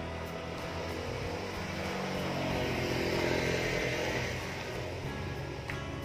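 Background music over a motor vehicle passing by. The vehicle's noise swells from about a second and a half in, peaks around the middle, and fades out by about four and a half seconds.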